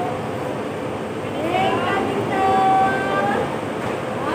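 Steady rumble of a bus terminal with an engine running. About halfway through, a drawn-out, high-pitched voice calls out, rising and then held for about a second.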